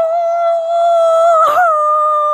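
A person's voice letting out one long, loud, high-pitched wail held at a nearly steady pitch, with a brief wobble and a short knock about one and a half seconds in.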